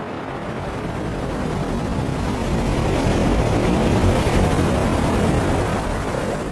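Breaking wave and churning whitewash rushing over a surfer's helmet-mounted camera, a dense roar that builds up over the first few seconds.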